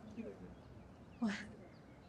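Faint bird chirps, a few short high calls over quiet background, with one brief spoken word about a second in.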